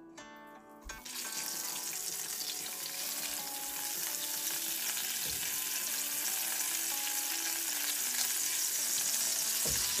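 Butter melting and sizzling in hot oil in a frying pan, pushed around with a spatula. The sizzle starts about a second in and grows steadily louder as the pan heats.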